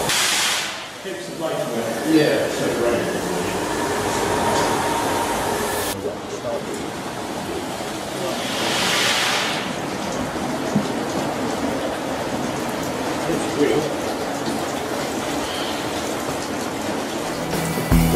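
Water rushing and splashing in the race as the pumping station's scoop wheel turns: a steady wash of noise, louder for a moment about nine seconds in.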